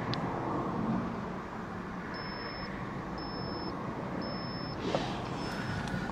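Steady low traffic rumble heard from inside a parked car with a window cracked open. About two seconds in come three short high beeps a second apart, then a fainter fourth just before the end, marking the 30-minute mark.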